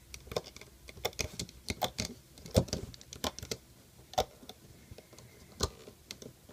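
Irregular small clicks and taps of a metal crochet hook and fingers against the plastic pegs and base plates of a Rainbow Loom, with a few louder clicks around the middle.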